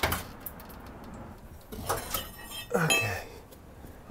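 Metal clinks and clanks as a floor jack is let down under the rear axle of a Chevrolet Suburban and the axle drops, unloading the rear coil springs: a knock at the start, then two bursts of ringing clinks about two and three seconds in.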